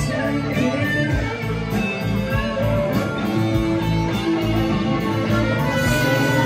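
Live blues band playing an instrumental passage: electric guitars over bass and drums, with a steady cymbal beat.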